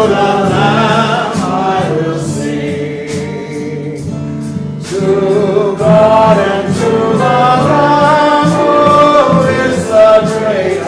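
A choir singing a hymn in several voice parts, dropping to a quieter passage a couple of seconds in and swelling again about halfway through.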